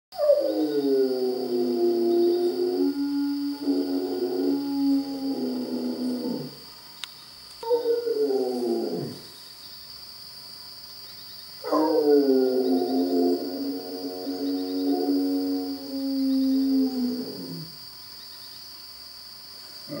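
Fila Brasileiro howling for its absent owner: a long howl that starts high, drops to a held note and slides down at the end, a short falling howl, then another long howl.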